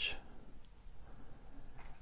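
Quiet room tone with one brief, faint click about two-thirds of a second in.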